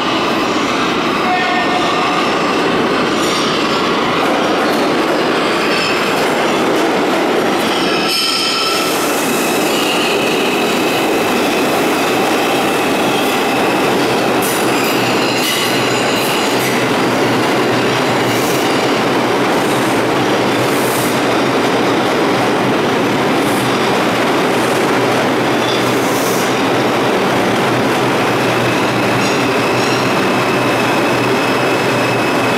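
A Bombardier R142 subway train pulling into an underground station and running along the platform, its loud steady rumble of wheels on rail joined by thin high wheel squeal at times and a run of sharp clicks over the rail joints in the second half.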